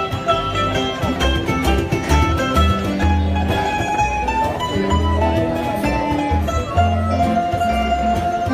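A live band playing country-style music: guitars strumming and picking over an upright bass holding the low notes.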